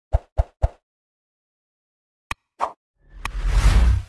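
Animated outro sound effects: three quick plops in the first second, then two short clicks, then a swelling whoosh near the end that is the loudest sound.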